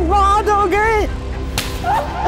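Dramatic background score: a wordless vocal melody of held, bending notes over a steady low drone, cut by a sudden sharp swish-like hit about one and a half seconds in.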